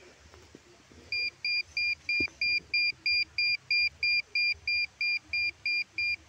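SOLID SF-810 Pro satellite signal meter beeping, short high beeps at an even rate of about three a second, starting about a second in: its tone signalling that it has locked onto the satellite signal.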